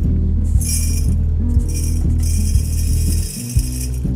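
Background music plays throughout. Over it comes the rattling hiss of coarse beet sugar crystals being poured from a steel bowl through a metal funnel into a glass jar. It comes in a short spurt about half a second in, then runs again from about two seconds on.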